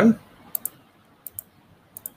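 Clicks at a computer: three pairs of short, sharp clicks, spaced about two-thirds of a second apart, each pair a quick press-and-release.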